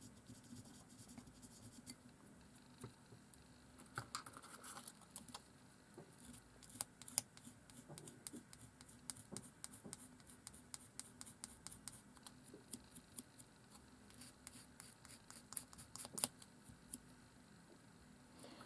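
Faint, irregular scratching and tiny clicks from hand work on the wooden nib of a twig dip pen: a fine drill bit in a pin vice scraping in the nib's small hole, and the nib handled between the fingers. The scratching gets busier in the second half.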